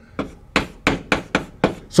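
Chalk tapping and knocking on a chalkboard while writing numbers and symbols: a quick, irregular series of about ten sharp taps.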